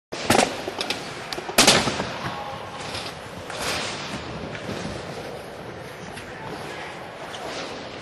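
Skateboard clacking on concrete: two loud sharp cracks, the first just after the start and the louder about a second and a half in, with a few lighter clicks. Then the wheels roll steadily over the smooth floor, the sound echoing in a large hall.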